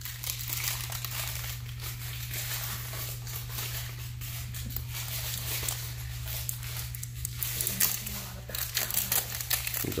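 Paper wrapping from a toy mystery egg being crumpled and crinkled by hand: a continuous run of small crackles and rustles that gets busier near the end.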